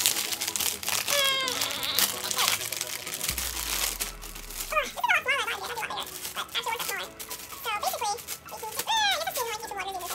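Clear plastic bag crinkling and rustling as it is pulled and torn open by hand at its stapled, zippered seal, with brief wordless voice sounds now and then.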